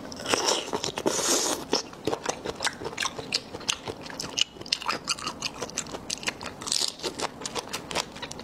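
Close-miked biting and chewing on a raw soy-marinated tiger shrimp: a dense run of small wet crackles and clicks, with two longer hissy sucking sounds, one about a second in and one near the end.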